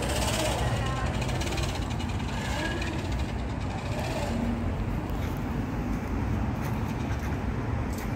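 Outdoor background: a steady low rumble, with faint voices of people talking in the background.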